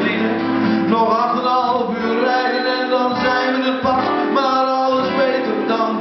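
Acoustic guitar played live with a man singing over it, through a stage PA.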